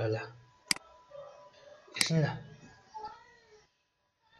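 A single sharp click from the computer about two-thirds of a second in, amid a few muttered syllables.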